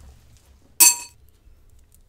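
Jewelry set down onto a pile with one sharp clink about a second in, ringing briefly; it is most likely the faceted glass-bead necklace just handled.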